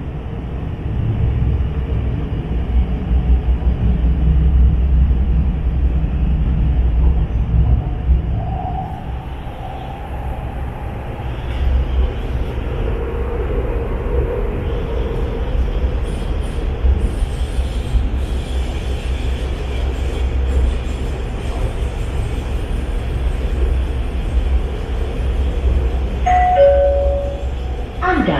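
Inside a Hyundai Rotem metro train car on the move: a steady low rumble of wheels on the track, with a faint motor whine rising and fading in the middle. Near the end, a short two-note chime, high then low, sounds: the signal that an onboard announcement is about to play.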